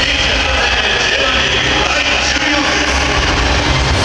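Large football stadium crowd, a loud, steady mass of many voices at once.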